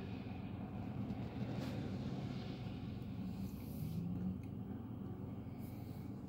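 A car running, heard from inside its cabin: a low, steady rumble.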